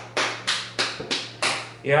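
A quick series of about six sharp taps or knocks, roughly three a second, over a faint steady low hum.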